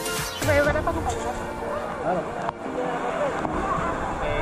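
People's voices talking over background music, with a low steady rumble underneath.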